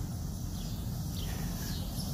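Steady outdoor garden background: an even high hiss of insects over a low rumble, with a faint short chirp about a second in.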